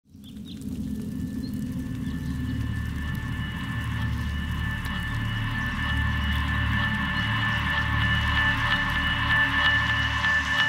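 Ambient electronic music intro: a sustained synth drone with two high held tones over a low pulsing bass pad. It fades in within the first second and slowly grows louder, with faint scattered ticks.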